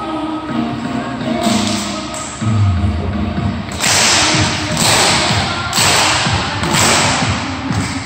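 Young cheerleaders performing a cheer routine to music. Thuds from clapping and stomping run under it, and from about halfway come four loud noisy bursts about a second apart.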